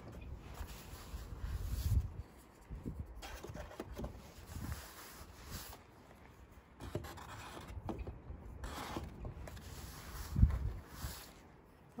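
Handling noise of eggs being taken out of an overall pocket and set into a cardboard egg carton: fabric rustling and rubbing with soft knocks, and one sharper knock near the end.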